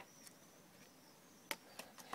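Near silence, broken by one sharp click about one and a half seconds in and a fainter click just after.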